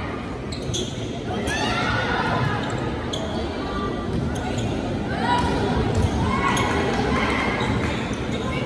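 Volleyball rally in a gym: spectators shouting and cheering over one another, with sharp slaps of the ball being hit during play.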